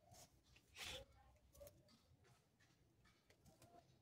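Near silence: room tone with a few faint, short handling sounds, the clearest about a second in, as hands lay a strip across a plastic bucket lid.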